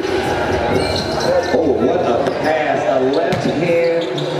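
Basketball being dribbled on a hardwood gym floor, with voices running through it.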